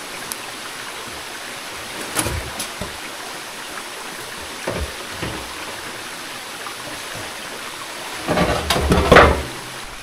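A stream running steadily, with a few scattered knocks and footfalls as a long alloy irrigation pipe is carried along. Near the end a louder scraping and knocking lasts about a second.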